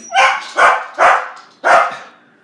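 A dog barking four times in quick succession, the barks about half a second apart.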